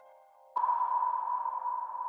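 Background music drone: after a brief near-silent gap, a single steady high tone comes in suddenly about half a second in and holds unchanged.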